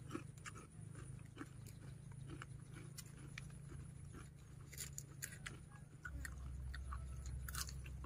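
Faint crunching and chewing of a crispy, flour-battered deep-fried banana leaf, as irregular sharp crackles. A low steady rumble comes in about six seconds in.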